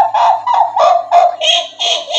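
A high-pitched chattering voice, a rapid string of short squawking calls about three a second, standing for the creatures' strange language.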